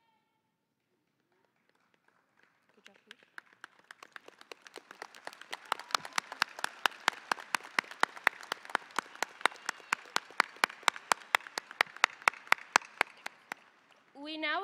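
Audience clapping in unison at a steady beat of about three to four claps a second. It starts a couple of seconds in, grows louder, and stops just before the end.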